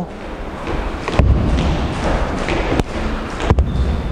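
Boxing glove punches landing on a trainer's focus mitt: three sharp smacks, the first about a second in and the last two close together near the end.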